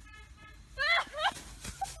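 Excited shouting: a high, held call at the start, then a loud cry about a second in.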